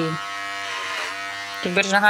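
Corded electric hair clippers buzzing steadily while cutting short hair, the hum dipping slightly in pitch about halfway through.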